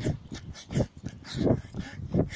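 A runner breathing hard while running, short rhythmic breaths about three in two seconds.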